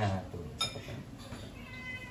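A domestic cat meowing, a faint, thin high call near the end.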